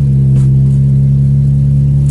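Car engine and road noise heard from inside the cabin while driving: a loud, steady low drone that holds one pitch.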